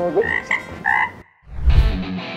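Cartoon-style frog croak sound effect: three short pitched croaks in the first second. After a moment of silence comes a deep bass hit as heavy rock music with electric guitar kicks in.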